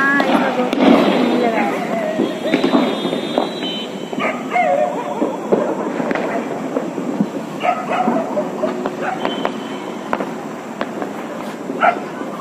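Diwali firecrackers going off in scattered sharp bangs over a busy background of voices.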